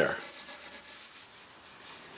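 Grade 0 steel wool soaked in denatured alcohol being scrubbed over a mahogany board, a faint, steady rubbing as the alcohol dissolves the old finish.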